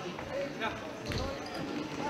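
Indistinct voices of players and spectators in a sports hall, with a futsal ball thumping once on the hall floor about a second in.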